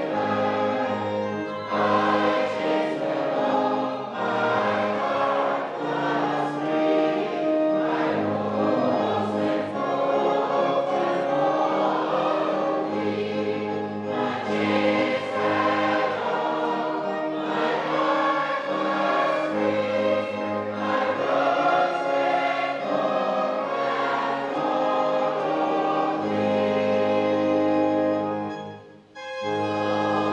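A congregation singing a slow hymn together, with an instrument underneath holding long, steady bass notes that change every couple of seconds.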